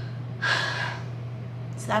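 A woman's audible intake of breath about half a second in, a short soft rush between phrases, over a steady low hum; speech resumes near the end.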